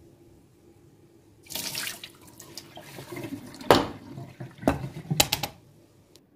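Water from a kitchen tap running and splashing into the sink on and off, around a stainless steel mesh strainer. Several sharp knocks come in the second half.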